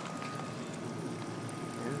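Water trickling steadily from small holes drilled in a PVC drip-irrigation pipe onto the soil of bucket-grown tomato plants.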